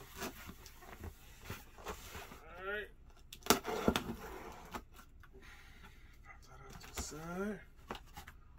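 Knife slitting the packing tape on a cardboard shipping box, with cardboard scrapes and rustles as the flaps are pulled open; a sharp crack about halfway through is the loudest sound. Two short rising hums from a man's voice come in between.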